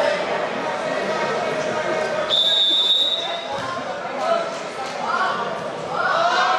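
Referee's whistle: one steady blast of about a second, starting a wrestling bout, heard over voices and chatter in a large hall.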